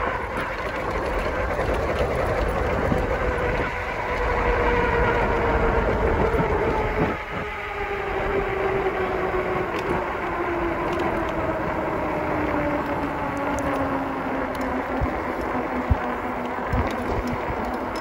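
Electric hub-motor whine from a dual-motor e-bike, slowly falling in pitch as the bike loses speed, over a steady rumble of wind and tyres on the road.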